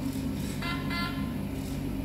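LEGO Mindstorms EV3 brick's speaker sounding two short beeps in quick succession, over a steady low hum.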